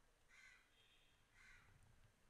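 Near silence: room tone, with two faint, brief sounds about a second apart.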